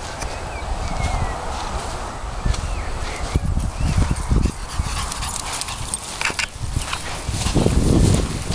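A Yorkshire terrier puppy in long grass, heard faintly among low wind rumble on the microphone that comes in stronger gusts about halfway through and near the end.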